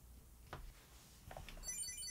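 Quiet room with a couple of faint clicks, then near the end a Chipolo Bluetooth tracker in a wallet starts ringing. It gives a rapid run of high-pitched beeps in answer to a remote ring command.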